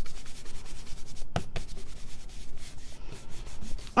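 Palms rubbing and pressing a cardstock card against the work mat in a quick run of short strokes, pressing the freshly glued layers together. Two brief squeaks come about a second and a half in.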